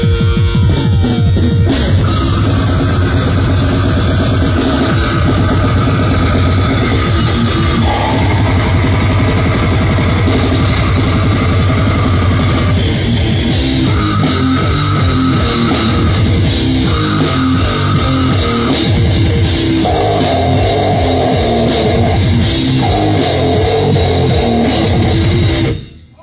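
Slam death metal band playing live: fast, heavy drum kit with downtuned electric guitar and bass, loud and dense throughout, cutting off abruptly at the very end.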